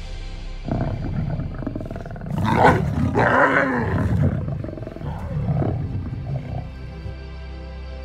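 Lions growling and snarling in rough bursts over a kill, loudest from about two and a half to four seconds in, over background music.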